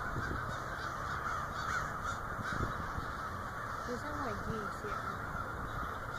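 A large flock of crows cawing together in flight, a dense, continuous chorus of overlapping calls.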